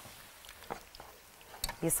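Faint, steady sizzle of battered fries deep-frying in hot oil, with a few light knocks as a sauce is stirred in the pan beside it.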